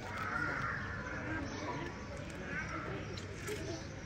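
Giant otter calling, once at the start and again about two and a half seconds in, with people talking.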